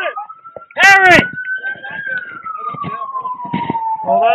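Police car siren wailing, slowly rising in pitch and then falling away. A loud shouted voice cuts in briefly about a second in.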